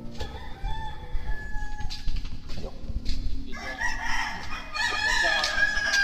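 Animal calls: a faint call about a second in, then a louder, longer call that starts about halfway through and holds a steady pitch.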